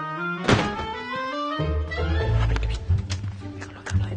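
Background music with sustained notes and a plucked bass line, cut by a sharp thump about half a second in and a smaller knock near the end.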